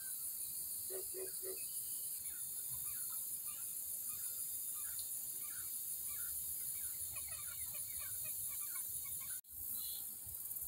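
A bird gives three short calls about a second in, then scattered short chirps, over a steady high drone of insects. The sound drops out for an instant near the end.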